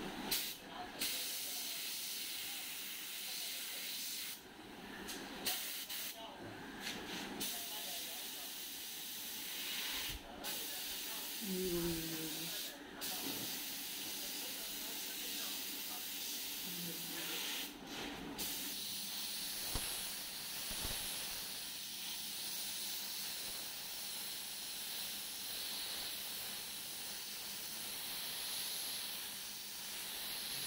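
Airbrush spraying paint, a steady hiss of compressed air that cuts out briefly several times as the trigger is let off and pressed again.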